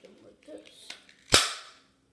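A single sharp bang from a toy gun firing, about a second and a half in, with a short ringing tail; faint handling clicks before it.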